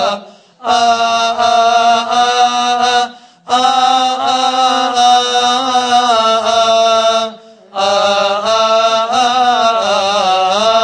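Coptic Orthodox liturgical hymn chanted by men's voices on a single melodic line, long held notes with wavering ornamented turns. Three phrases, broken by short pauses for breath about half a second, three seconds and seven and a half seconds in.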